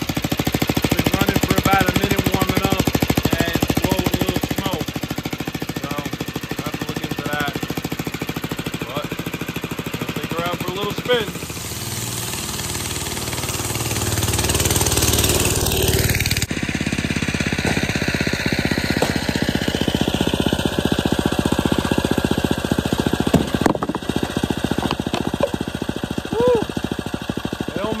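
A single Tecumseh four-horsepower engine on an old Homelite Spitfire go-kart running with a fast, even firing beat. Its level dips about eleven seconds in, then swells again as the kart is driven.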